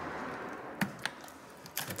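Small plastic clicks of a laptop battery cable connector being worked loose from its motherboard socket by fingers: a few sharp ticks, the last pair near the end.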